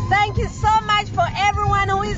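A woman's voice, with some drawn-out notes, over the steady low rumble of a car's cabin on the move.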